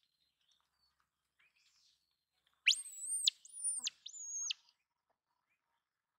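Three high-pitched whistled calls in quick succession, each sliding up sharply, holding, then dropping away.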